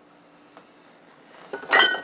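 Glass beer bottles clinking against each other on a refrigerator door shelf as one is pulled out: a quick cluster of clinks near the end, with a brief ring after them.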